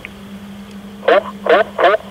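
Speech only: a man's voice over a two-way radio, quiet for the first second, then calling "hoch" (up) three times in quick succession, with a steady low radio hum underneath.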